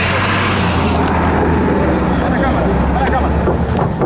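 Steady low hum of a motor vehicle engine and road noise heard inside a car's cabin, with faint voices; the hum drops away shortly before the end.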